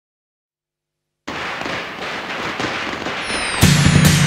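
Silence, then about a second in a string of firecrackers bursts into dense, continuous crackling. Near the end a falling whistle sounds and the festive music starts with a heavy drum hit.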